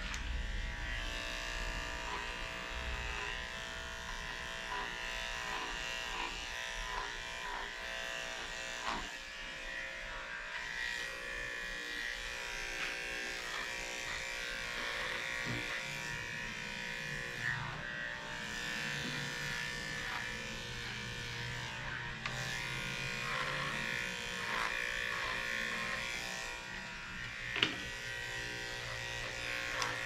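Electric dog grooming clippers running steadily, shaving through a dense matted coat, with a few light knocks and one sharper knock near the end.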